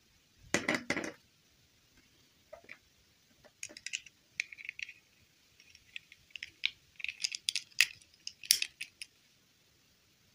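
Small plastic Disney Princess dolls and their rigid snap-on dresses handled on a table: a brief clatter about half a second in, then a run of light plastic clicks and scrapes as a dress is pushed onto a doll.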